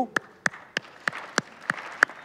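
Audience applause: one pair of hands claps close and distinctly, about three claps a second, over softer clapping from the crowd.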